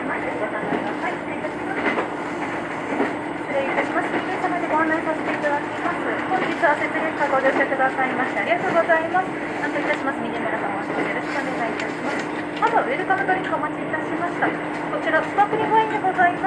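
Cabin sound of the Setsugekka diesel railcar under way: a steady engine hum and running noise, with passengers chattering indistinctly throughout.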